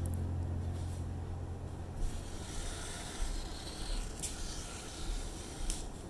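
Black Sharpie marker rubbing and scratching on watercolor paper: an uneven, faint hiss as leaves are drawn. A low hum fades out over the first couple of seconds.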